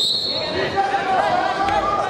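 A high whistle note held for under a second at the start, over arena crowd voices, with a dull thud on the mat near the end.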